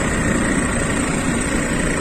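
Steady engine and road noise of a motorcycle pedicab (bentor) driving along, heard from the passenger seat under its canopy.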